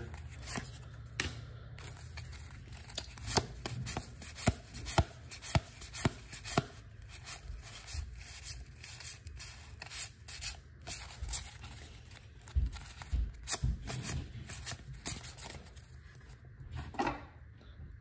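A stack of 1987 Donruss baseball cards handled and flipped through by hand: a string of short, sharp clicks and rubs as the card edges slide past one another.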